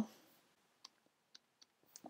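Three faint clicks of a computer mouse starting near the middle, over near silence.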